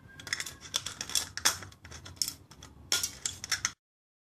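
Box-cutter blade cutting and trimming the thin aluminium wall of a soda can: a run of short, scratchy crackling strokes that cuts off suddenly near the end.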